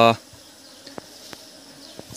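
A swarm of honey bees buzzing steadily and faintly around the net bag they are clustered on, with the end of a spoken word at the very start.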